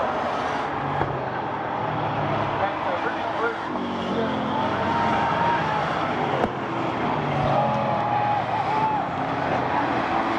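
Bomber-class stock car engines running as several cars circulate a short oval track, with crowd voices from the grandstand mixed in.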